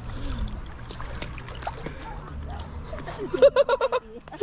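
River water running and splashing around stepping stones. Near the end, a short burst of rapid laughter close to the microphone is the loudest sound.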